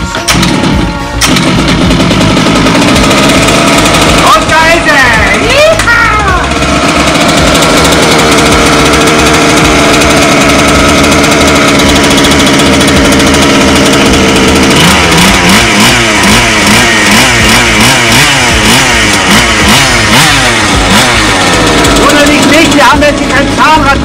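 Small two-stroke petrol engine of an FG Evo13 large-scale RC car starting about a second in on its first run after a pull-start with the intake choked, then running loud. It is revved up and down a few seconds in, runs steadily through the middle, and is blipped rapidly up and down in the last third.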